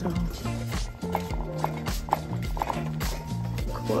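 Background music with a steady beat and a repeating bass line.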